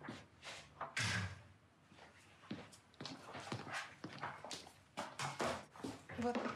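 Footsteps on a hard floor with light, irregular clicks and knocks as a tray is carried across the room; one louder knock about a second in.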